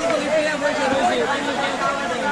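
Men's voices talking and chattering together at a meal table.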